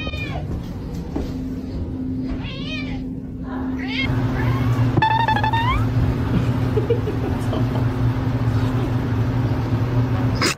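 Cats meowing several times: a few short meows early and around three seconds in, then a longer meow rising in pitch about five seconds in, over a steady low hum.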